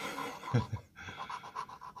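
Gold coin scraping the latex off a scratch-off lottery ticket in quick repeated strokes, about six or seven a second. A short breathy chuckle comes in the first second.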